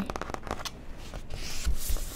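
Pages of a paperback book riffled quickly, a fast run of paper clicks in the first half second, followed by softer rustling and handling of the book, with a brighter rustle and a couple of low bumps near the end.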